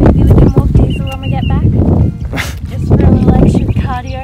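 Wind buffeting the camera microphone with a heavy rumble. Over it come short high calls, a quick run of about five about a second in and a few more near the end, from a voice or an animal.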